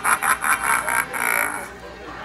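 A quick run of rhythmic laughter that stops about three-quarters of the way through.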